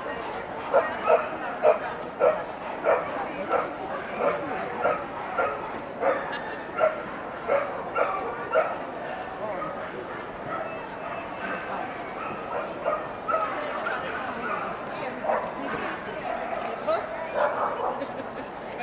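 A dog barking in a quick run of short, sharp yaps, about two a second, which stops a little past halfway, over the steady chatter of a crowd.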